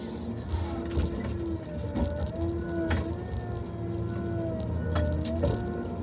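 Tigercat LX870D feller buncher running, heard from inside the cab: a steady low engine drone under a slowly wavering hydraulic whine, with a few sharp knocks.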